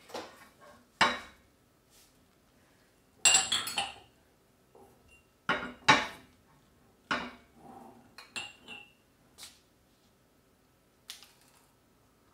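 Empty glass jars being picked up and set down on a counter, clinking and knocking against the counter and each other in about seven separate short clusters of knocks.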